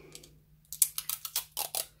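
A quick irregular run of sharp clicks and taps lasting about a second, from hands handling a vinyl record and a plastic tape dispenser on a tabletop.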